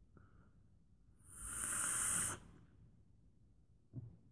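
A person taking a lung hit from a vape: one loud, breathy hiss of vapour being blown out, starting about a second in and lasting just over a second, after a faint short breath.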